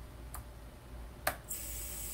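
Two light clicks, then about a second and a half in a steady high whine and hiss starts and holds: the small brushless motors of an Eachine Tyro89 toothpick quad spinning at idle after arming.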